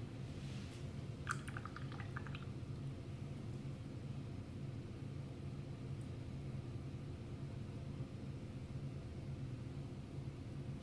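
Steady low room hum, with a brief run of faint small ticks about a second in.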